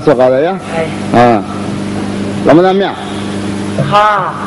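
Performers' voices over stage microphones: four short drawn-out vocal calls with a rising-then-falling pitch, about a second apart, over a steady low hum.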